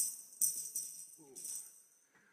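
Metal jingles, tambourine-like, rattle in two shakes: one right at the start and another about half a second in. Each fades out within about a second.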